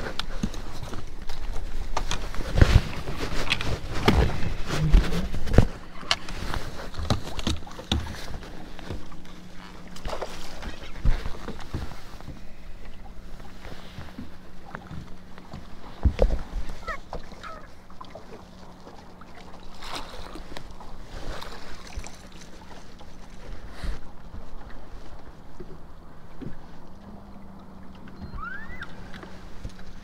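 Jacket fabric rubbing on the microphone and scattered knocks on the boat as a freshly caught bass is handled. A steady low hum sets in about five seconds in and continues.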